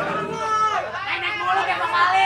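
People talking, with no music playing, over a low steady hum.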